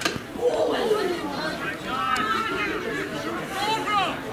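Several voices shouting and calling out across the pitch as camogie players contest the ball, some calls high and held. A single sharp click comes right at the start.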